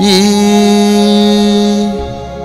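A man's voice singing one long held note into a microphone in a slow Telugu Christian devotional song, with a short waver as the note begins. A quieter sustained musical accompaniment runs underneath.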